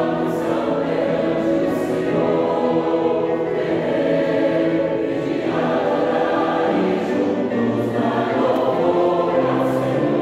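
Mixed choir of men's and women's voices singing a hymn in parts, moving through held chords, with lower voices coming in more strongly in the second half.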